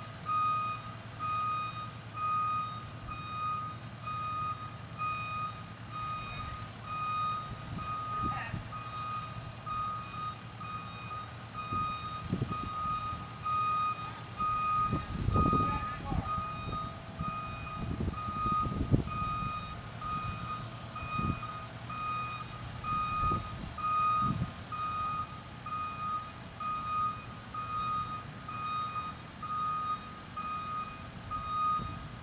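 SkyTrak telehandler's back-up alarm beeping steadily about once a second over the low hum of its engine running as it moves the load.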